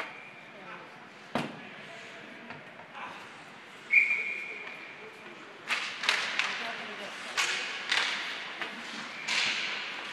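Ice hockey game: a sharp knock about a second and a half in, then one short steady referee's whistle blast about four seconds in. From just before the face-off on, a run of sharp clacks of sticks and puck and the scrape of skate blades on the ice.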